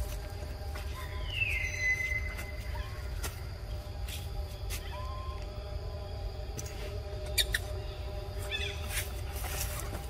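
A short high squeak that slides down in pitch and then holds, about a second and a half in, with a couple of faint chirps later, over a steady low outdoor background broken by scattered clicks and taps.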